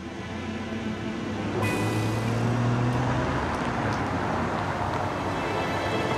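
Porsche Panamera driving up: engine and tyre noise growing louder over the first two seconds, then holding steady as the car rolls in.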